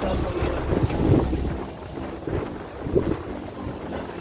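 Wind buffeting the microphone, a low rumble that rises and falls.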